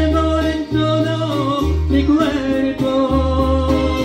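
A woman singing live into a karaoke microphone over a recorded Latin ballad backing track, holding long notes that waver slightly.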